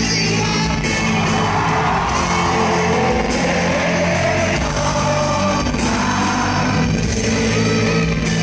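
Indie rock band playing live, with electric guitars, drums and singing, heard from amid the audience.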